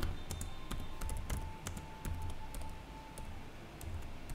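Typing on a computer keyboard: a run of irregular key clicks, over a low steady hum.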